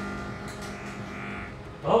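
Steady electrical hum of an opened-up microwave oven's magnetron running and feeding a plasma flare, fading out about a second and a half in as the plasma dies.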